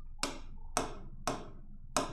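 Four sharp taps of a stylus pen on the glass of an interactive touchscreen display, about half a second apart, as the on-screen tool palette is pressed.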